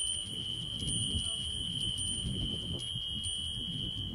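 Hanging metal bells ringing, a steady high tone with light tinkling on top, over a low murmur of voices.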